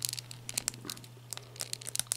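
Light, irregular plastic clicks and creaks of a McFarlane Toys action figure's swappable head being pushed down onto its neck peg and handled by fingers.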